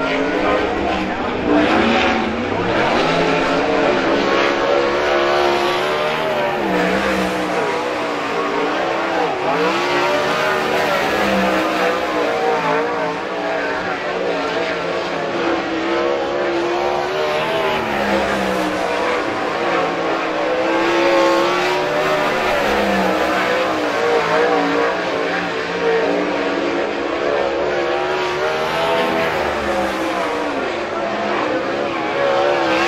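Winged sprint car V8 engine running hard around a dirt oval, its pitch repeatedly rising and falling as it accelerates and backs off through the laps.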